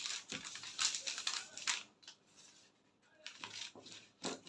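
Scissors cutting through a brown paper pattern: a quick run of snips and paper crackle over the first two seconds, a short pause, then a few more near the end.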